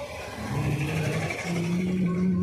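Motor vehicle engine and road noise heard from inside a moving vehicle in traffic, a steady hum with a low tone that steps up in pitch about halfway through.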